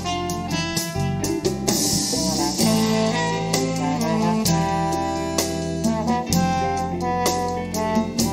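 Big band playing jazz live: a saxophone section and brass over piano, guitar and a steady rhythm section with regular drum strokes.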